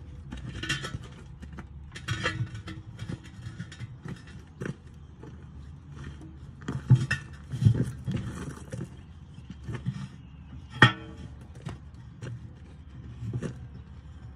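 Steel bar of a Vevor manual tire changer clanking and scraping against a rusty truck wheel and tire as the bead is worked off. Irregular knocks come throughout, heaviest two-thirds of the way in, with one sharp clank late on.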